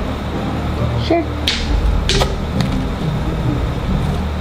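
A few short, hollow knocks of PVC pipe being handled as a long chute is set onto its PVC stand.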